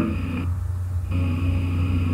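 A steady low hum with faint hiss in the background of a recording, with no speech; the hiss dips briefly about half a second in.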